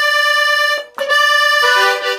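Veronese 80-bass piano accordion playing held chords. The sound breaks off briefly about a second in, then resumes and moves to a new, lower chord near the end.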